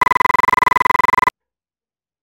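A held flute note from a music track frozen into a steady buzzing tone by a stuttering playback loop, repeating rapidly and evenly. It cuts off suddenly a little over a second in, leaving dead silence.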